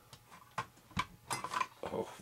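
A handful of light clicks and taps, about six in two seconds, from small parts and objects being handled on a workbench.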